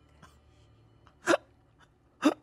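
A man's single short, hiccup-like burst of laughter about a second in, with only faint background around it.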